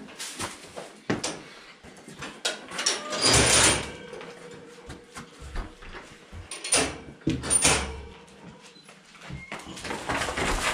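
Young Holstein calves moving about in a straw-bedded barn pen, knocking and rattling against the feed barrier as they pull back out of it. The loudest clatter comes about three to four seconds in, with two shorter ones near seven and eight seconds.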